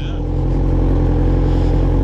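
Motorcycle engine running steadily at low speed, a constant low hum with an even hiss of wind and road noise over it.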